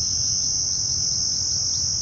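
Insects singing in a steady, unbroken, high-pitched drone.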